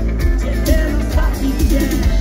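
Live rock band playing loudly through a PA, heard from the crowd: drums, guitars, bass and singing.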